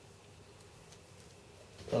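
A quiet room with a few faint small handling sounds from gloved hands working wet carbon into a wing mould; a man starts speaking near the end.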